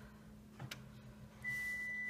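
Quiet room with a low steady hum and a few faint clicks. About one and a half seconds in, a steady high-pitched tone starts and holds.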